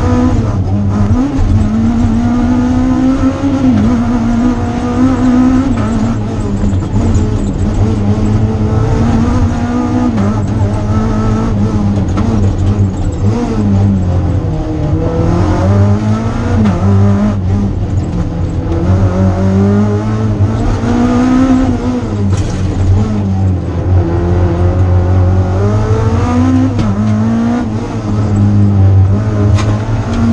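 Rally car engine heard from inside the cockpit, driven hard on a stage: the revs climb and drop again and again through gear changes and braking, with a few deeper dips where the car slows for corners.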